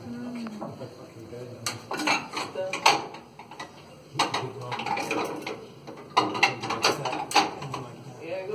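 Clusters of sharp clattering clinks and knocks, like hard objects striking metal, in three bursts about two, four and six seconds in, over faint background voices.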